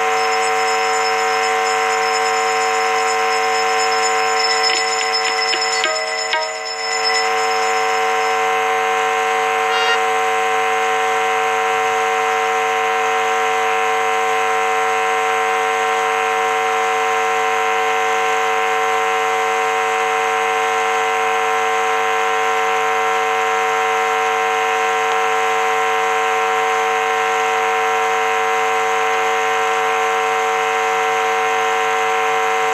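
A steady, unchanging drone of many held tones at once, with a brief patch of high thin ringing and clicks about four to seven seconds in.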